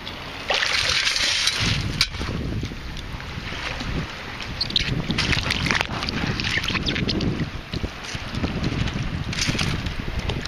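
Water sloshing and churning as a sand scoop digs into the sandy bottom of shallow bay water and is worked back up, with wind buffeting the microphone. There is a sharp knock about two seconds in.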